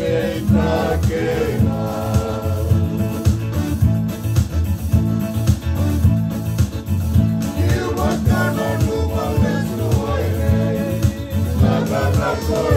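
Men singing a Fijian-language song to an electronic keyboard with a steady bass line and a strummed acoustic guitar. The voices drop out for a few seconds in the middle while the keyboard and guitar carry on, then come back in.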